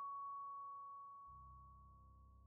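Quiet background music: one sustained chime-like note slowly fading, with a low drone coming in past halfway.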